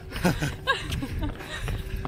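A man and a woman laughing briefly while jogging.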